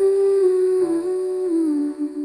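Wordless humming in an AI-generated (Suno) love ballad: a slow melody of held notes stepping down in pitch over soft sustained accompaniment.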